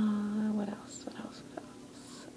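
A young woman's drawn-out hesitation "um", held on one steady pitch for under a second, followed by a few faint clicks.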